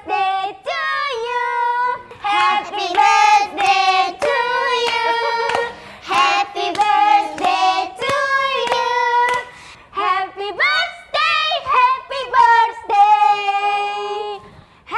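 Young girls singing a birthday song together in high voices, with hands clapping along.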